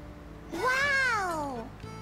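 A single drawn-out meow, about a second long, rising then falling in pitch, over faint background music.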